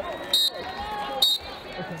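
Two short, shrill blasts of a referee's whistle about a second apart, over arena crowd noise and a public-address voice.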